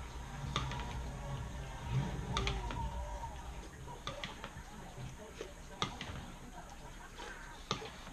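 Eating cereal with a spoon from a bowl: the spoon clicks against the bowl now and then, with slurping that draws air in along with the milk.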